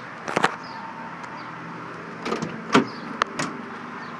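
Tailgate of a 2014 Honda Ridgeline pickup being unlatched and lowered: a pair of sharp clicks just after the start, then several knocks and clunks between about two and three and a half seconds in. A steady low hum runs underneath.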